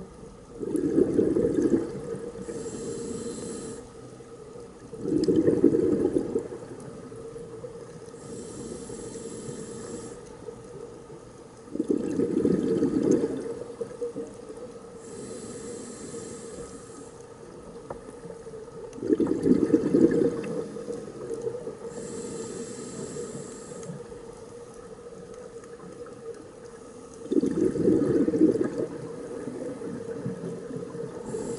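Scuba diver breathing through a regulator, heard underwater: loud rumbling bursts of exhaled bubbles about every seven seconds, five in all, each followed by a short hiss of inhaling through the regulator. A faint steady hum runs underneath.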